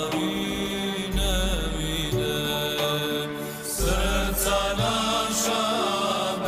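A choir singing an Islamic devotional song (ilahija) in a slow, chant-like style with long held notes, over a deep sustained bass note that comes in about a second in and again near four seconds.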